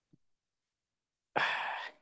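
A person's short breathy sigh, about half a second long, a little past halfway through.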